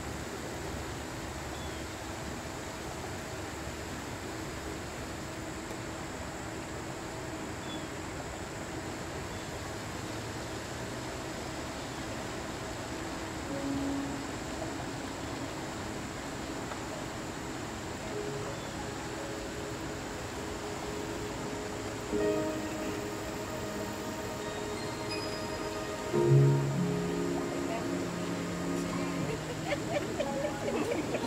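Soft instrumental background music with long held notes over a steady hiss; it grows fuller and a little louder in the last few seconds.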